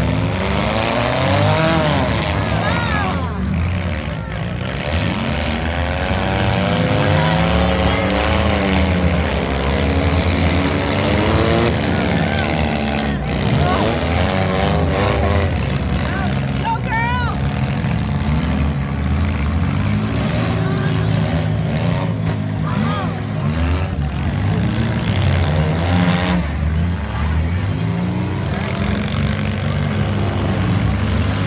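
Several small-car demolition derby engines running and revving together, their pitch rising and falling continuously, with crowd voices mixed in.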